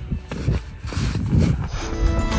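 Footsteps in snow, irregular soft thuds as people set off walking up a snowy slope. Background music comes in near the end.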